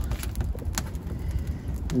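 Wood fire crackling in an open brick hearth, a few sharp pops over a steady low rumble.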